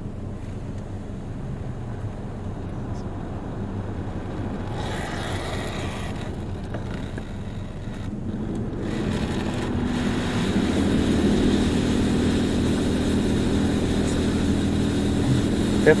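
Belanger Saber touch-free car wash spraying tri-foam over the car, heard from inside the cabin: a steady hum with a hiss of spray on the glass and roof that grows louder about halfway through.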